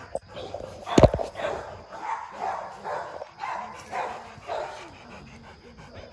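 A Rottweiler panting close by, short breathy pants about twice a second, with one sudden loud sound about a second in.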